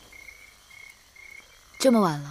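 Night ambience: faint, short chirps at one pitch, repeating about twice a second. A woman's voice begins near the end.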